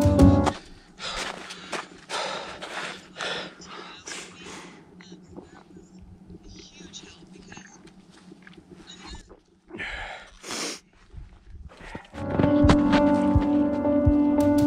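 A runner's hard, quick breathing, about two breaths a second, that quietens into soft sips through his hydration vest's drinking tube, with two louder breaths about ten seconds in. Background music cuts out just after the start and comes back about twelve seconds in.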